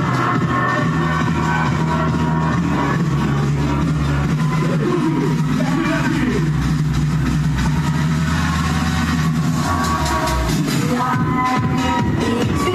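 Music with a heavy, sustained bass played loud through a custom car sound system, at a steady level.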